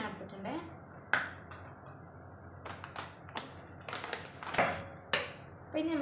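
Metal spoon knocking and scraping against a steel pot and a jar while flour is scooped, heard as a scattered series of sharp clicks and taps, about six in all.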